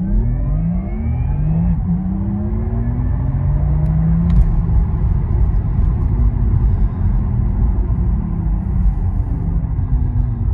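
Inside the cabin of a Porsche Taycan GTS Cross Turismo electric car under full acceleration: a rising electric drive whine over heavy road and tyre rumble. The whine climbs for about the first four and a half seconds, then eases and falls in pitch as the car slows.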